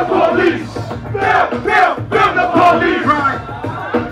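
Live hip-hop performance through a club PA: shouted rap vocals over a bass-heavy beat, with crowd noise.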